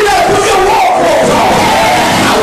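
Loud church congregation shouting and singing together in praise, voices rising and falling, over a bass guitar.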